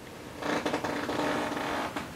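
A creak starting about half a second in and lasting about a second and a half, with a steady low tone under it.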